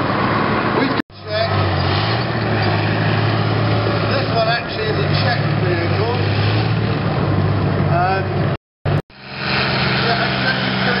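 BMP-1 infantry fighting vehicle's diesel engine running with a steady low drone as it drives through the mud. The sound cuts out briefly about a second in and again just before the end, at edits.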